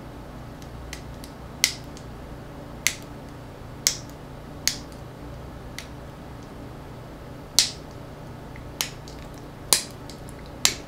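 Small sharp clicks, about seven at irregular spacing, as the parts of a small MP3 player with a metal back cover are handled and worked apart by hand, over a low steady hum.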